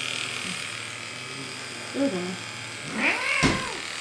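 Electric animal clippers buzzing steadily while shaving a cat's matted coat. The buzz stops about three and a half seconds in, just as a cat meows once.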